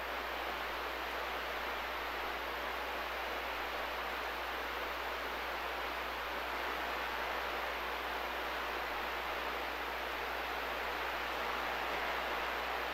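CB radio receiver hissing with steady static on an open, unmodulated channel between transmissions, over a low steady hum.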